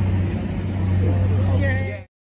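Steady low engine rumble with background noise from an outdoor site, with faint distant voices toward the end. The sound cuts off abruptly.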